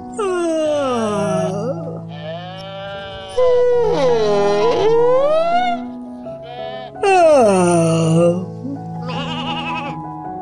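Three long, wavering sheep bleats, the last the loudest, over soft background music with held chords.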